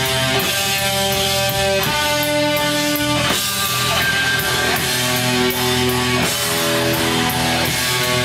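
Live black metal band playing: distorted electric guitars hold chords that change about every one to two seconds, over a constant wash of cymbals and drums.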